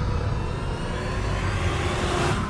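Trailer sound-design rumble: a dense, loud, low rumble with a hiss on top and faint rising tones above.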